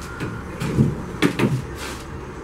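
Hollow ceramic bricks set down onto a fresh course of thin-set cement mortar: a few dull knocks, two of them close together midway.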